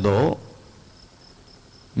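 A man's spoken word into a microphone ends shortly after the start, followed by a pause in which faint crickets chirp steadily, a high, evenly pulsing chirp several times a second.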